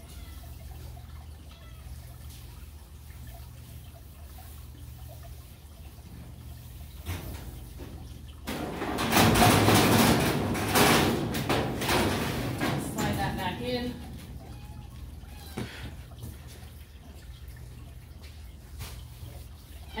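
Stainless steel floor pan of a cat cage sliding along its metal runners: a loud scraping rush about halfway through that lasts around four seconds, over a steady low hum.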